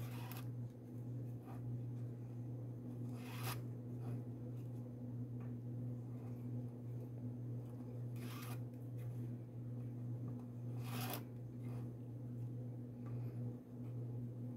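Macramé cords rasping as they are pulled through and drawn tight into knots: four short swishes about three seconds apart, over a steady low hum.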